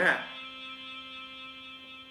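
A spoken syllable at the very start, then a steady hum made of several held tones that lasts through the pause.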